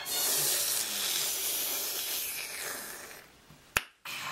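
A loud, even hiss of noise that starts suddenly, fades away over the last second or so, and ends with a single sharp click.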